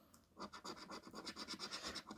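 A coin scratching the scratch-off coating of a paper scratchcard: faint, rapid back-and-forth strokes, starting about half a second in.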